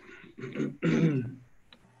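A person's short wordless vocal sounds: a breathy burst, then two voiced bursts, the last and loudest falling in pitch.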